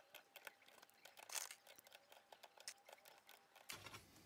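Faint, scattered clicks and taps of 18650 lithium cells being pushed into a plastic cell-holder bracket and knocking against one another.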